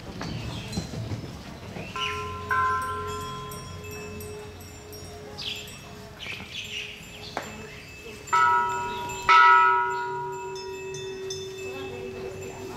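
Metal temple bells struck four times: two strikes about two seconds in, then two more near the eighth and ninth seconds, the last the loudest. Each strike is left ringing, with a low hum that carries on to the end.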